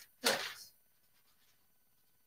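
A short rustle of a sheet of parchment paper being handled, lasting about half a second near the start.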